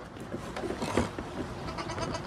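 Goat kids bleating faintly, with a brief knock about a second in.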